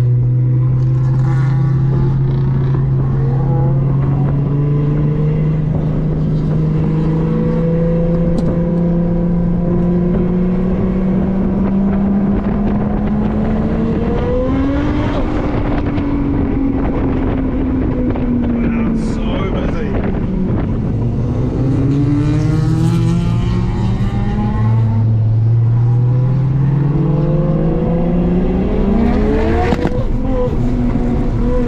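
Car engine heard from inside the cabin while driving on a racetrack: the engine note climbs slowly for about the first half, drops and falls away around the middle, then rises again in steps near the end as the car accelerates.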